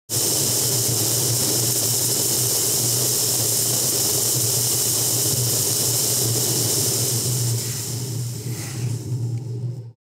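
Wind and tyre noise from a van driving along a snowy highway, picked up by a camera mounted on the outside of the vehicle: a steady rush with a low drone beneath. In the last two seconds it turns slightly quieter and uneven.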